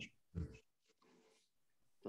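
Near silence in a pause between speakers, broken once about half a second in by a short, faint sound.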